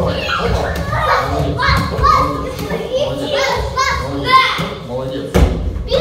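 Children's voices chattering and calling, with a few thuds of a child's boxing gloves hitting open hands; the loudest thud comes near the end.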